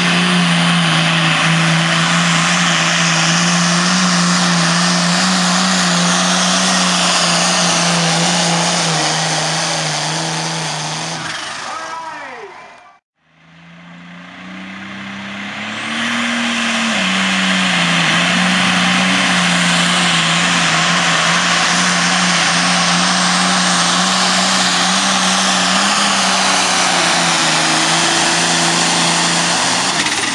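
Diesel engine of a pulling tractor running flat out under load as it drags a weight-transfer sled, a loud steady drone. The sound fades away about twelve seconds in, then fades back up on a second pulling tractor, whose revs rise briefly a few seconds later and settle into the same steady drone.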